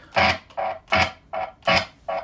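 Gibson electric guitar chord through an amp, switched on and off with the pickup toggle switch so it sounds in short, rhythmic stabs: five pulses, about one every 0.4 seconds, each starting and cutting off sharply.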